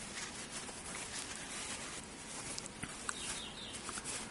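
Faint, continuous rustling and scrubbing of a damp tissue rubbed back and forth over a CPU's metal lid by cotton-gloved hands, wiping off old thermal paste.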